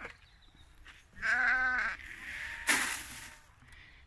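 A lamb bleating once, a wavering call just under a second long, about a second in, followed by a brief rustling noise.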